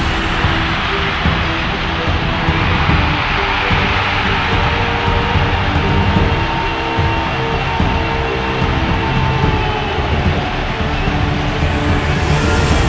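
Background music with long held notes over a loud, steady stadium crowd roar of football fans cheering.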